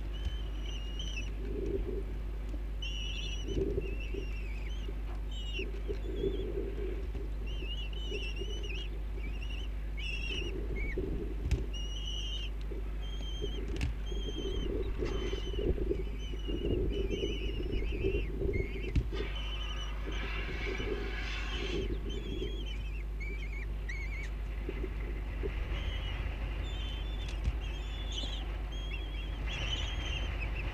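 Bird calls: short, high chirps repeated many times, over a steady low hum and soft low sounds.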